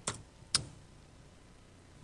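Two faint clicks of computer keyboard keys, about half a second apart near the start.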